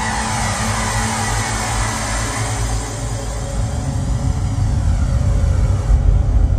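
Experimental electronic beat music in which a broad wash of hissing noise with a slow sweeping whoosh runs over a steady low bass, fading gradually over several seconds.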